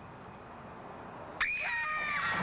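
A low, quiet hiss, then about one and a half seconds in a girl's sudden, loud, high-pitched scream.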